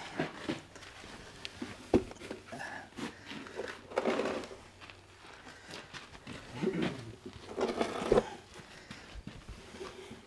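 A wooden box set down on a dirt floor, with one sharp knock about two seconds in, followed by scattered light knocks and shuffling as it is handled.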